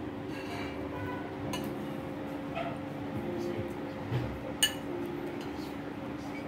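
Restaurant table sounds: faint background voices and a steady low hum, with one sharp clink of tableware about four and a half seconds in.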